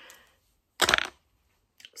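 A brief, loud clatter of small hard objects about a second in: makeup items being picked up and knocked together.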